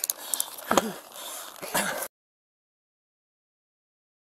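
Body-camera audio of a scuffle on the ground: rustling and a few sharp clicks with two short grunts. About two seconds in, the sound cuts off abruptly to total silence.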